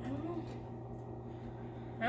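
A faint, steady low hum made of evenly spaced tones, with a brief faint voice near the start.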